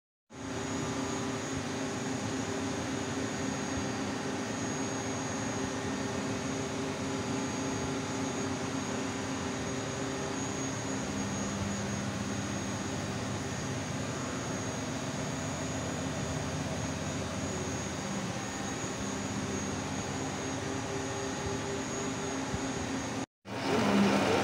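CNC milling machine running with a steady hum and a thin, constant high whine, cutting off abruptly near the end.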